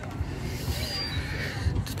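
Outdoor ambience with a low, uneven rumble and a faint, thin high whistle about a second in.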